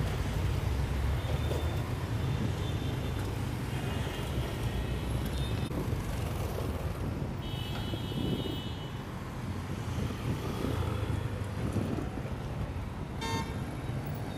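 Busy city street traffic: a steady rumble of motorbike and car engines going by, with a horn beeping near the end.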